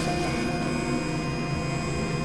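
Experimental electronic drone: several synthesizer tones held steady over an even noisy hiss and a low rumble, with no beat or melody.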